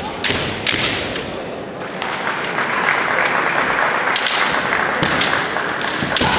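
Kendo exchange: bamboo shinai clacking and sharp stamping footfalls on a wooden floor, with long drawn-out kiai shouts from about two seconds in.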